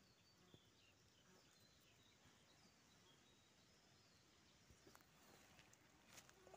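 Near silence: faint woodland ambience with a few faint, short high chirps.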